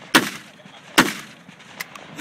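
Short-barreled Saiga-12 semi-automatic 12-gauge shotgun fired from the hip with 3.5-inch 00 buckshot shells: two loud shots a little under a second apart, each with a short echoing tail.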